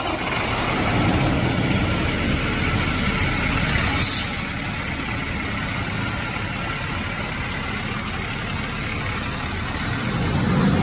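Fire engine with a Pierce Velocity cab, its diesel engine running loud and steady as the truck pulls forward. There are two short hisses about three and four seconds in.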